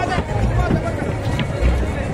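Crowd chatter, many overlapping voices, with music playing underneath and an uneven low rumble.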